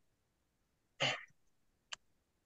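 Near silence, broken about a second in by one short breathy burst from a person, and by a brief click near the end.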